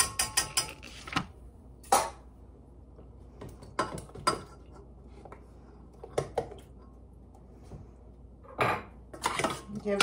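A utensil clinking against a metal can and a dish as drained pineapple chunks are scooped into the sauce. It starts with a quick run of ringing taps, about five a second, for the first second or so, then gives scattered single clinks.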